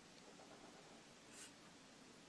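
Faint scratching of a Staedtler Pigment Liner 0.3 fineliner drawing ink lines on paper, with one brief, clearer stroke about one and a half seconds in.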